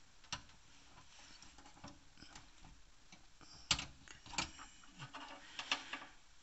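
Light plastic clicks and taps of SATA power and data cable connectors being handled and pushed onto hard drives in a desktop computer's drive bay. The clicks are scattered and irregular, the loudest a little past halfway, with a quick run of them near the end.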